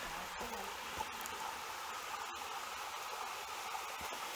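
Spring water running: a steady, even hiss, with a few faint clicks.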